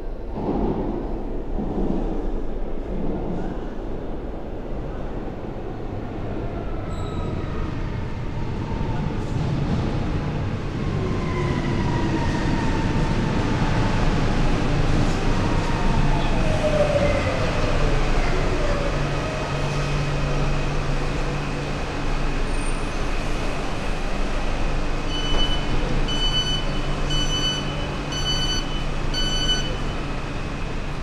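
Electric metro train at an underground station: steady rumble with a whine falling in pitch as the train slows. Near the end comes a run of about six evenly spaced electronic beeps, the door-closing warning.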